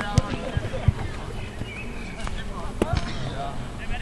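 Shouts of footballers on an outdoor pitch, with several sharp thumps, the loudest in the first second.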